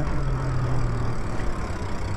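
Wind noise on the microphone and road noise from a Lyric Graffiti e-bike coasting to a stop, with a faint motor whine slowly falling in pitch as it slows.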